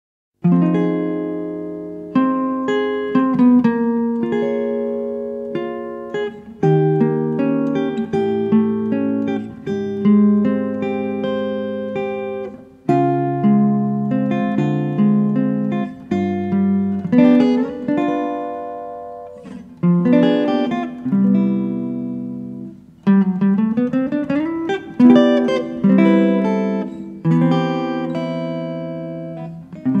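Guitar music: plucked chords and single notes ringing and dying away, with a sliding rise in pitch about two-thirds of the way through.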